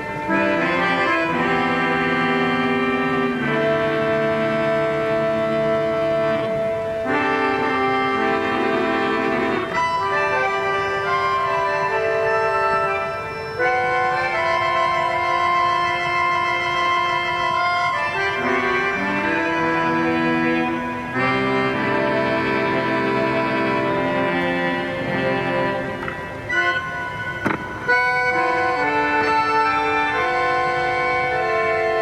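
Hammond 44 Pro electric keyboard melodica played through an amplifier: sustained reedy chords that change every one to three seconds, with a few brief dips in loudness.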